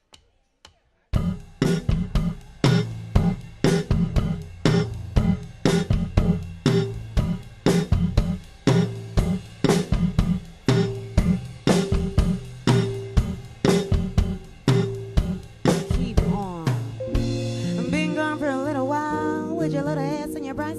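Live band playing: electric bass and drum kit in a tight, evenly pulsed groove with keyboard, coming in about a second in after a few soft count-in clicks. Near the end the beat gives way to held chords with a wavering melodic line over them.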